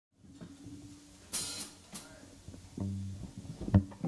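A rock band's instruments sounded loosely on stage before a song, with no steady beat: a held low guitar or bass note, two cymbal crashes about a second and a half and two seconds in, another low held note, and a loud drum hit near the end.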